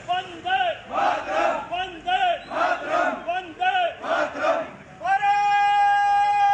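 A group of men chanting protest slogans in unison, short rhythmic shouted calls about two a second. About a second before the end they break into one long held shout.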